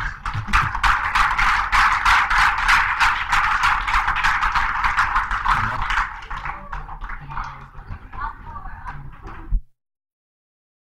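Audience applauding, full for about six seconds, then thinning out before the sound cuts off abruptly near the end.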